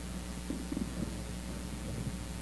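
Steady electrical mains hum and hiss on the audio feed. A few faint low rumbles come about half a second to a second in.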